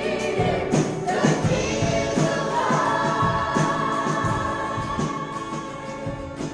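Live worship band playing a song: acoustic and electric guitars with a drum kit keeping the beat, and voices singing a held melody line. The music tapers off a little near the end.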